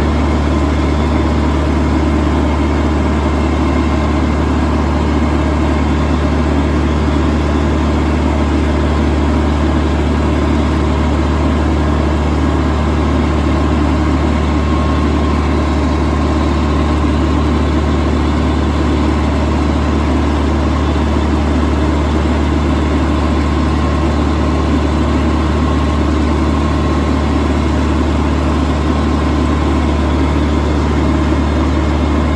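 Compact tractor engine running steadily as the tractor drives along slowly, heard up close from on the tractor.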